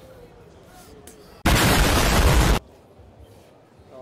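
A sudden, loud burst of noise, a little over a second long, that starts about one and a half seconds in and cuts off abruptly, over faint hall background.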